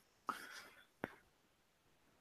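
A faint breathy whisper, then a single sharp computer click about a second in, as the typed search is submitted.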